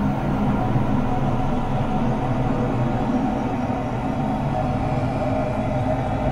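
Ambient electronic music generated mainly with Koan Pro generative music software: dense, sustained synthesizer drones with many held tones over a deep low rumble, steady and without a beat.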